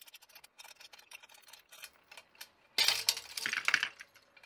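Sped-up hook-pulling strength test on a crane scale: rapid light ticking and clicking of the loaded hooks, shackles and chain, then, about three seconds in, a loud burst of metallic clatter as the CNC-machined steel test hook gives way at about 126 kg and the rig rattles loose.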